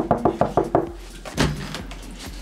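Rapid knocking on a door, about six quick knocks a second, stopping under a second in, followed by a single heavier thump about a second and a half in as the door is handled.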